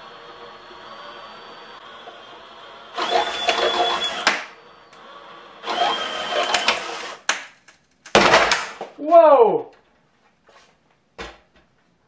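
Cordless drill turning the screw jack of a wooden load-test rig, run in two whining bursts of about a second and a half each as it pushes a plunger into a glued box under some 400 pounds of load. About eight seconds in comes a loud sudden burst, the box's bottom giving way, then a falling tone.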